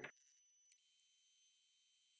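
Near silence, with only faint, thin, steady high-pitched tones.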